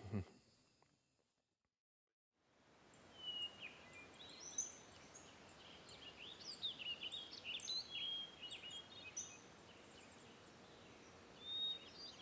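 Several birds singing and calling, a busy mix of short chirps and high whistles over a faint steady outdoor hiss, starting about two and a half seconds in after a short silence.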